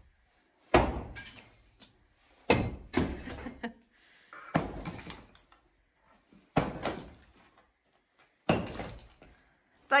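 Sledgehammer blows against a plastered clay-brick dividing wall, five strikes about two seconds apart. Each strike is followed by broken brick and plaster clattering to the floor.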